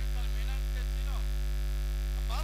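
Steady electrical mains hum at about 50 Hz from the stage's amplified sound system. A voice speaks faintly for about a second near the start.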